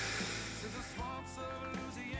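Background music: a song from the soundtrack playing at a moderate level, with a new set of held notes coming in about a second in.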